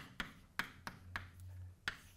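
Chalk writing on a blackboard: about six sharp, irregularly spaced taps and clicks of the chalk against the board.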